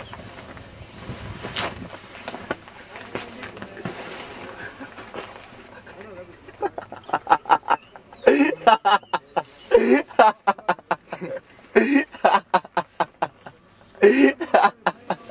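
Faint rustling and clicks, then from about halfway a person's voice close to the microphone in short, rapid vocal bursts without clear words.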